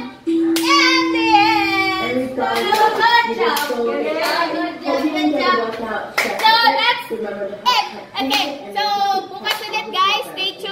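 Women's voices shouting and singing excitedly, with a held note early on and scattered hand claps after about two and a half seconds.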